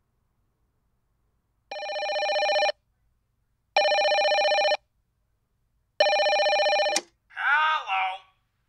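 A telephone ringing three times, each ring about a second long with a fast warble and the rings about two seconds apart. The third ring cuts off abruptly with a click as it is answered, followed by a brief spoken word.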